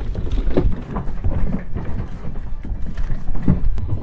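Sheep hooves clattering and thudding unevenly on a livestock trailer's wooden floor and ramp as the flock jumps out, over a low rumble of wind on the microphone.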